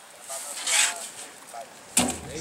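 A blade rasping and crunching through the hard, armoured scales at the back of an alligator gar's head, one short rasp just under a second in, with faint talk underneath.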